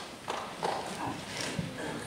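Irregular light knocks and shuffling of footsteps as people shift and move about on the wooden stage, over faint murmuring.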